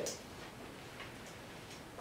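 Quiet room tone with a faint single click about a second in.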